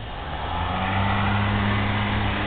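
An engine running, building up over about the first second and then holding a steady low hum.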